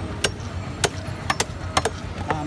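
Chopping a large carp on a bonti, the blade biting through flesh and bone in sharp knocks, about six in two seconds, some in quick pairs. A steady low hum runs underneath.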